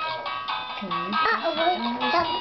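Music playing from a handheld Dora play CD toy, with sustained notes and a voice over it.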